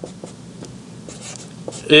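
Marker pen moving across a whiteboard in short, faint strokes as a letter and an equals sign are written. A man's voice starts near the end.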